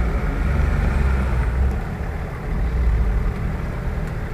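Off-road 4x4 SUV's engine running at low revs as it crawls over a muddy forest rut: a steady low rumble that eases off briefly around the middle.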